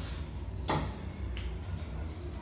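A single short click or tap, with a fainter tick about half a second later, over a steady low hum.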